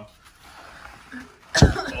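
A single sharp cough about one and a half seconds in, after a quiet stretch.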